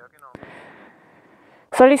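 A man's voice: a short pause filled with faint background noise, then speech starting near the end.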